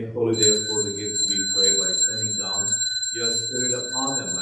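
Altar bell struck once, about a third of a second in, and left ringing with a steady high tone under a man's prayer. It is rung as the priest extends his hands over the bread and wine at the epiclesis of the Eucharistic Prayer.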